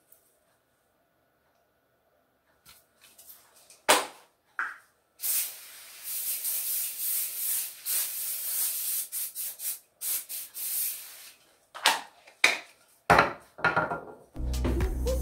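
Aerosol glass cleaner can spraying in a run of hissing bursts lasting about six seconds. A sharp click, the loudest sound, comes a few seconds before the spraying, and a few knocks follow near the end.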